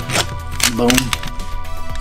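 Plastic clicks of a Megatron Knight Armor Turbo Changer toy as its armour piece is flipped over by hand: a couple of sharp snaps in the first half-second. Background music runs underneath.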